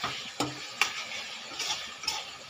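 Chicken pieces sizzling in hot oil in a wok while a metal spatula stirs them. The spatula strikes and scrapes the pan with sharp clacks about twice a second through the first second, then scrapes again near the end.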